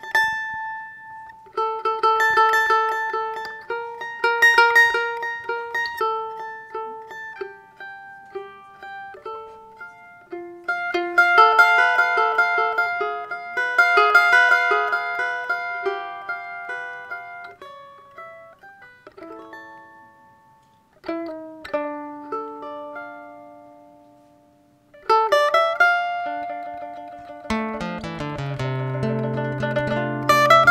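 Mandolin and acoustic guitar duo playing an instrumental piece. The mandolin carries the melody in quickly picked notes and pauses twice in the second half; the guitar's bass notes come in near the end.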